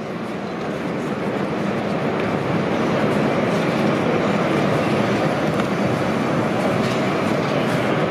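A steady, echoing rumble filling a large indoor race arena. It builds over the first couple of seconds, then holds.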